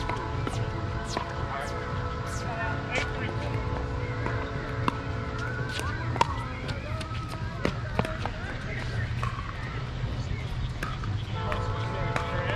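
Pickleball paddles striking a hard plastic ball in a rally: sharp pops, at first about half a second to a second apart, the loudest about six and eight seconds in. Steady background music fades out about midway and returns near the end, over a low outdoor rumble.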